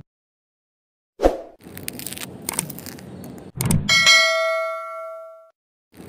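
Straight razor scraping through a layer of maggots on skin, as animation sound effects: a thud about a second in, then a crackly scrape. This is followed by a bright metallic ding that rings out and fades over about a second and a half.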